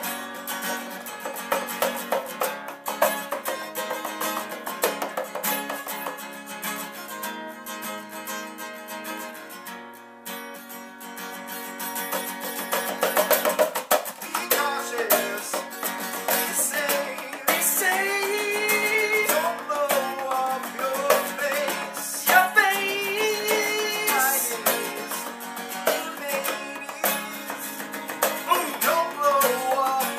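Acoustic guitar strummed in an instrumental break of a band song, with a wavering melody line joining over the second half.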